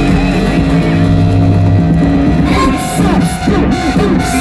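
Live amplified rock band music with long held notes over a low bass line, heard from within the audience.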